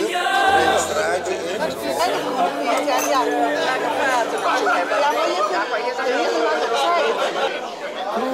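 Crowd chatter in a large hall: many people talking over one another at tables, with faint held music notes underneath.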